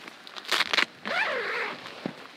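Nylon tent fly sheet and door zip rustling as the tent door is opened: a short rasp about half a second in, followed by a brief falling voice-like sound.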